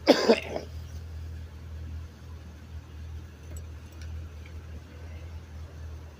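A person coughs twice in quick succession right at the start. After that there is only a steady low rumble, fitting the transit bus idling at the curb.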